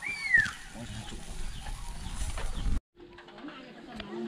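A single bird call near the start, one whistled note that rises slightly and then falls, over a low background rumble. The sound drops out abruptly near the end, and a steady low hum follows.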